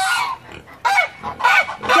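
Domestic geese honking, about four loud, harsh honks in quick succession.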